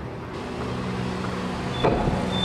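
An SUV driving off at low speed: engine and tyre noise that swells about a third of a second in, with a brief knock near the end.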